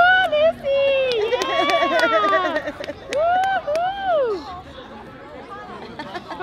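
High-pitched wordless voice: a long wavering, laughing squeal in the first few seconds, then two drawn-out rising-and-falling 'ooh' calls, over light street crowd noise.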